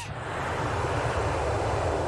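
Jet airliner flying, as a cartoon sound effect: a steady rushing noise over a low engine rumble, swelling about halfway through.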